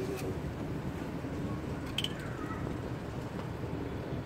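Faint background voices over a steady low hum, with a single sharp click about halfway through.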